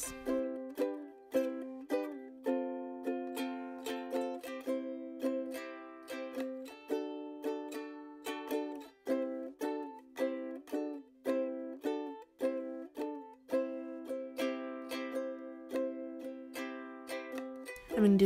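Background ukulele music: plucked notes and chords in a steady, even rhythm, each note fading quickly after it is plucked.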